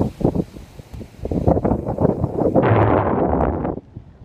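Wind buffeting a phone's microphone in irregular gusts, with a louder stretch of rushing noise from about two and a half seconds in until shortly before the end.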